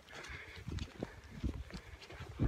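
Footsteps of a person walking on wet ground: a series of soft, irregular thumps.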